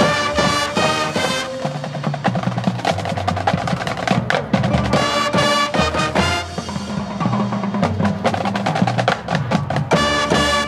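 High school marching band playing: bursts of quick repeated struck notes from the front ensemble's mallet percussion, near the start and again around the middle, over held low brass notes and drums.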